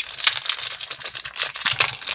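Foil Pokémon booster pack wrapper crinkling in rapid crackles as it is handled and pulled open by hand.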